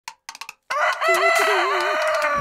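A rooster crowing: one long cock-a-doodle-doo starting just under a second in, after a few short clicks.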